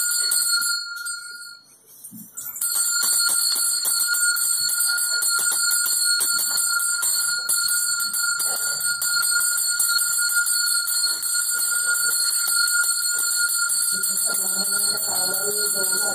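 A puja hand bell rung without pause in quick strokes, its steady ringing tones broken off for about a second and a half just after the start and then taken up again. Women's voices join near the end.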